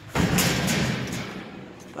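A sudden rustling scrape that starts just after the opening and fades away over about a second and a half.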